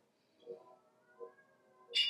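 Alcon Centurion phaco machine's audible feedback tones during torsional ultrasound and high-vacuum aspiration: faint steady tones with short low beeps about every 0.7 s, and a tone rising in pitch about a second in.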